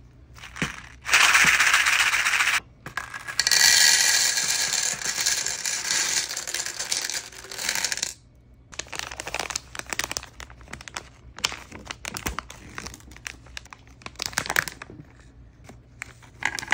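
Candy-coated chocolates rattling out of a cardboard tube onto a ceramic platter: a short burst about a second in, then a longer pour of about five seconds. After that come scattered clicks and taps of handling.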